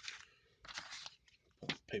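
Bubble wrap and paper crinkling and rustling in a cardboard shipping box as wrapped items are handled, in a few short bursts.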